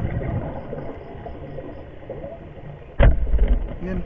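Underwater churning as the diver moves, then a sudden loud thump about three seconds in: the spear shot striking a surgeonfish.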